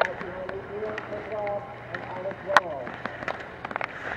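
Sharp clacks of slalom gate poles being struck by a skier, the loudest a little past halfway and several quick ones near the end, over faint voices in the background.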